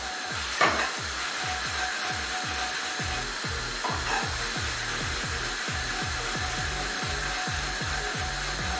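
Cubed eggplant sizzling in a nonstick frying pan over a gas flame as it is tossed and sautéed, with a knock of the pan about half a second in. Background music with a steady low beat runs underneath.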